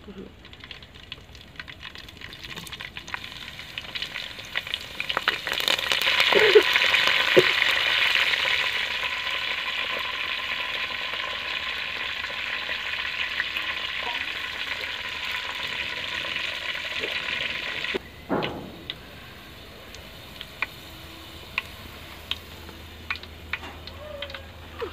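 Food sizzling in hot oil. The sizzle swells a few seconds in, is loudest for a couple of seconds, then eases and cuts off suddenly about three-quarters of the way through, leaving a low hum and a few light clicks.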